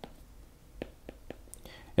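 Faint, sparse taps of a stylus on a tablet screen while a number is handwritten, with a short breath near the end.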